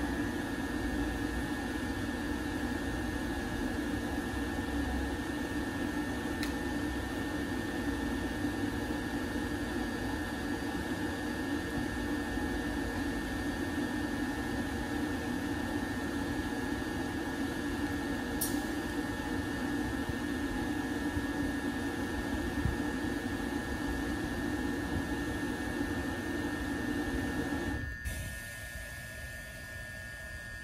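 A parked 209 series electric train idling with its pantograph up: a steady whine and fan-like rush from its onboard electrical and cooling equipment. About two seconds before the end the rushing part cuts off sharply, leaving a quieter steady whine.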